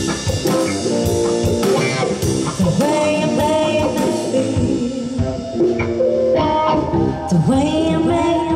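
Live band playing: drum kit, electric guitar and keyboard, with a woman singing. Near the end a note slides up and is held with vibrato.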